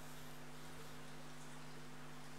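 Faint, steady electrical hum from the sound system, with a low hiss.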